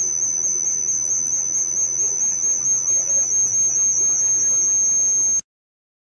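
Audio feedback whistle: a single steady high-pitched tone over a faint low hum, the squeal of a streaming phone's sound being picked up again by the microphone. It pulses in strength in the second half and cuts off abruptly about five seconds in.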